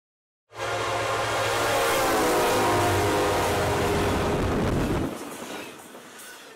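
A loud, sustained horn-like drone with many overtones over a noisy rush. It starts suddenly about half a second in, sags slightly in pitch midway, and fades away after about five seconds.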